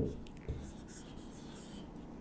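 Felt-tip marker writing on a whiteboard: faint scratching and squeaking strokes as letters are drawn, with a small tick about half a second in.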